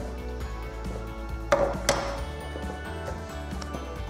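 Two sharp knocks about a second and a half in, a fraction of a second apart, as the lid of a manual water softener is unscrewed and taken off. Background music plays throughout.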